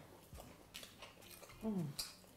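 People chewing food with faint, scattered mouth clicks, then a short, appreciative hummed "mm" near the end, the loudest sound.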